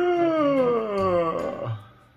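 A person's voice giving one long howl, sliding steadily down in pitch for about a second and a half before breaking up and fading.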